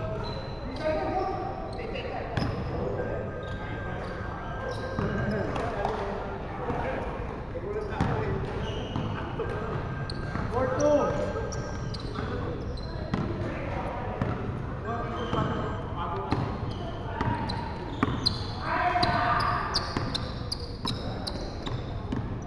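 A basketball being dribbled and bounced on a hardwood gym floor, with players' voices and calls across the court throughout.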